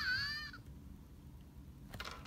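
A short, high-pitched, meow-like cry about half a second long at the start, dipping and then rising in pitch. After it comes only a faint low hum.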